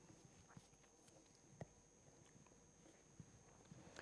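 Near silence: room tone with a few faint, brief clicks, the clearest about one and a half seconds in.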